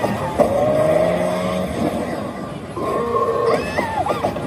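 Sound effects from a Kabaneri pachislot machine during its on-screen battle animation: a long pitched cry from about half a second in, then more tones and a rising glide near the end.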